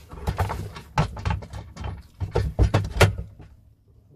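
Irregular knocks, clacks and short scrapes of a sliding mitre saw's plastic and metal head unit being handled and lined up on its steel sliding rods. The loudest knock comes about three seconds in, and then the handling stops.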